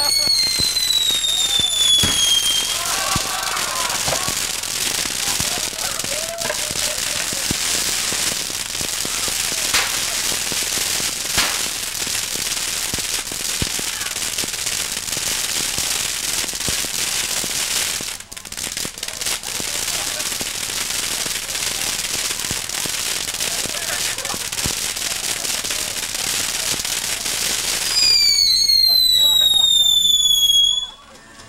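Ground firework fountains spraying sparks with a continuous loud hiss, broken by scattered sharp pops and crackles. A falling whistle sounds at the start and another near the end.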